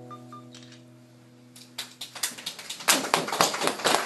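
Steel-string acoustic guitar's last chord ringing out and fading. About two seconds in, a small group starts clapping, and the applause quickly thickens and grows louder.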